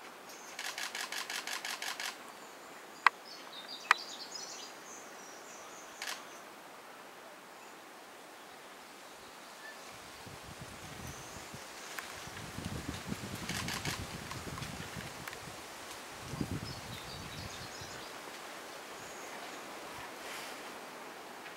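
Quiet forest ambience with faint bird chirps. A rapid ticking rattle of about ten ticks a second comes twice, near the start and again about thirteen seconds in. Two sharp clicks sound a few seconds in, and a low rumble runs through the second half.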